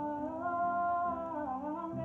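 Two women singing a slow worship melody in long held notes over sustained chords on a Nord Electro keyboard; the sung line steps up about half a second in and dips briefly near the end.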